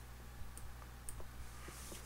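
Faint, scattered clicks of a computer mouse as red chord-degree marks are drawn onto an on-screen score, with a soft hiss near the end.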